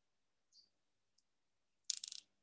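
Faint clicking: a soft click about half a second in, a tiny tick a little later, then a brief, louder clatter of quick clicks near the end.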